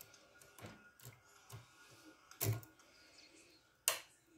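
Lock picks working in the keyway of an EVVA DPI dimple cylinder lock: faint scratching and light metal clicks, with two louder knocks, one about two and a half seconds in and one near the end.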